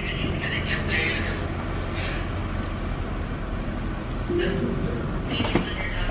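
1998 Lexus ES300's 3.0-litre V6 running steadily as the car creeps forward in drive, with a low engine hum and the rumble of tyres rolling on concrete.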